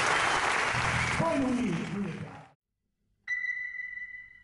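Audience applauding, with a voice calling out over it, cut off suddenly after about two and a half seconds. After a brief silence, a bright ringing tone strikes and slowly fades: the channel's outro sting.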